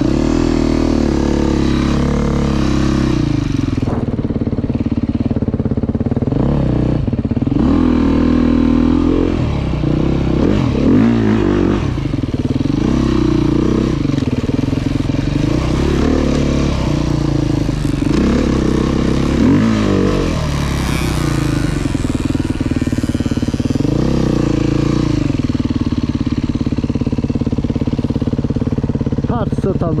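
Dirt bike engine being ridden, its pitch rising and falling again and again as the throttle is opened and closed.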